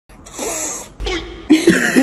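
A short cough-like burst, then a person starting to laugh in choppy, wavering bursts about one and a half seconds in.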